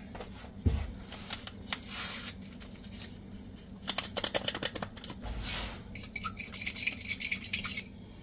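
A small paper packet of chicken bouillon being torn open and emptied into a ceramic bowl of water: a run of crinkles and rustles with light clinks against the bowl.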